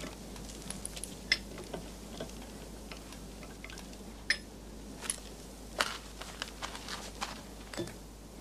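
Quiet, irregular clicks and clinks of metal as a tow rope's hook is fastened at the back of a car stuck in sand.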